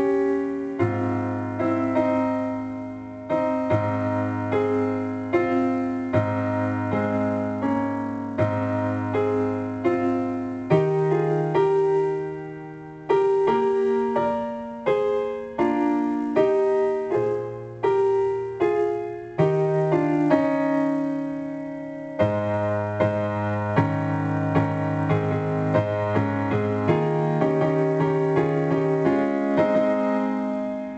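Piano being played: held bass notes and chords in the left hand, changing every second or two, under a melody of shorter notes in the right hand, each note fading after it is struck.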